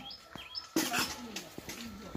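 Birds calling: short high chirps, and a lower call that glides down in pitch through the second half.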